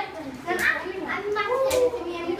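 Children's voices chattering and talking, with no clear words.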